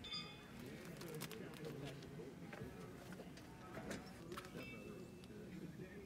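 Faint, indistinct voices, with a few light clicks scattered through.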